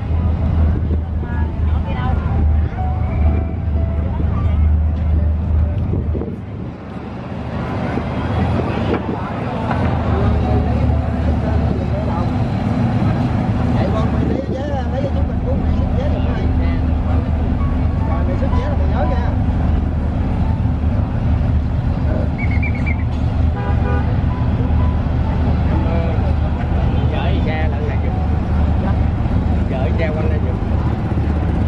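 Engines of high-speed passenger ferries running at a quay: a steady low rumble that eases off briefly about six seconds in and then comes back, with people talking in the background.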